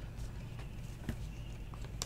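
Faint taps and slides of trading cards being flipped through a stack in hand, with a couple of light clicks, over a low steady hum.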